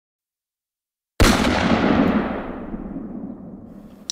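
Silence, then about a second in a single sudden loud bang, a gunshot-like boom sound effect, whose echoing tail fades away over the next three seconds.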